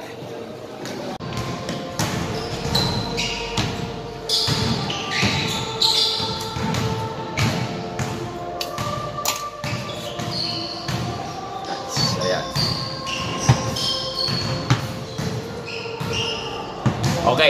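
Basketballs bouncing irregularly on a hard indoor court, several thuds a second, echoing in a large gym, with indistinct voices in the background.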